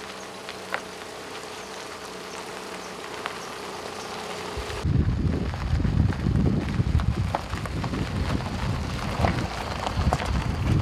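A car driving along a gravel road toward and past the microphone: a low, uneven rumble from about halfway through, after a quieter stretch of steady faint noise with a low hum.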